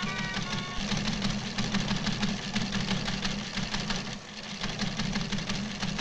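News ticker-tape machine clattering rapidly over a low mechanical hum, as a cartoon sound effect, dipping briefly about four seconds in.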